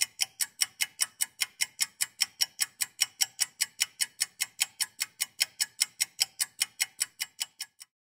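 Steady, even clock-like ticking, about five ticks a second, that stops shortly before the end.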